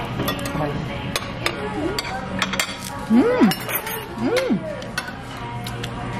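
Restaurant dining-room sound: plates and utensils clinking sharply several times over a steady background hum, with two short rise-and-fall vocal sounds from the room about midway.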